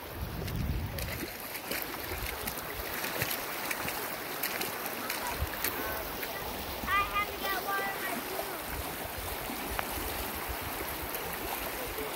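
Shallow stream water running over pebbles, a steady rushing. About seven seconds in, a brief high-pitched call sounds.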